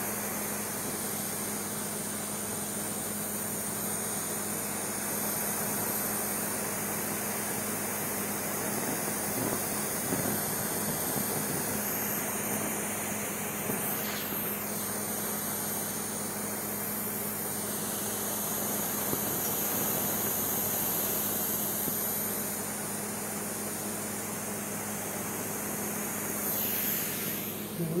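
Handheld gas torch running with a steady hissing rush as its flame plays over a marshmallow-and-chocolate s'more, caramelizing and charring it.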